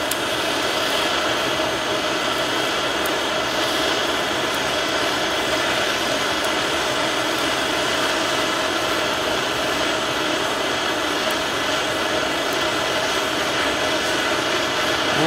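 Handheld gas torch burning steadily with a constant hiss, its flame on a steel AK receiver to bring one spot up to cherry red for quenching.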